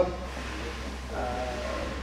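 A man's voice pausing mid-explanation: one word ends right at the start, and a soft, drawn-out hesitation sound follows about a second in, over a steady low hum.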